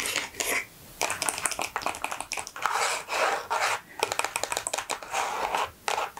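Long fingernails tapping and scratching on the cardboard box of a Miss Dior body milk: a rapid run of light clicks and scrapes, with a brief pause about a second in.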